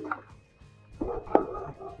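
Background music, and about two-thirds of the way through a single sharp knock as a wire pigeon cage is handled.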